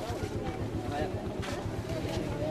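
An engine running steadily with a low, rapid throb, about a dozen beats a second, under people talking in the background.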